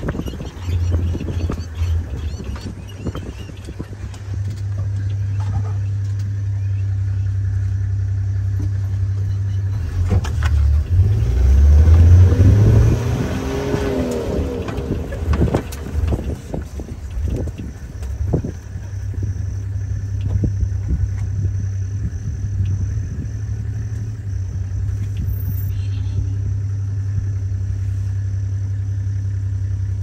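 Safari vehicle engine running with a steady low hum. It grows louder for a few seconds around the middle, its pitch rising and falling as it revs.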